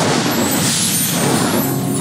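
A promo's opening sound effect: a sudden loud rushing blast of noise that thins out over two seconds, with sustained music notes coming in under it near the end.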